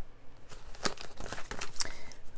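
Paper sticker sheets being handled as a sticker is peeled from its backing: light rustling with a few small sharp clicks.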